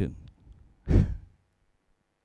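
A man's short, breathy laugh into a handheld microphone: a single puff of breath about a second in.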